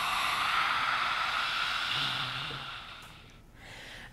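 A long, forceful open-mouthed 'ha' exhale of lion's breath (simhasana), made with the tongue stretched out and down, a strong breathy rush like fogging up a window. It fades out about three seconds in.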